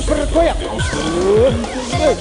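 Break in a live keyboard-played house (funkot) dance track: the steady beat thins out while pitch-bending synth effects swoop up and down, with a long rising swoop about halfway through.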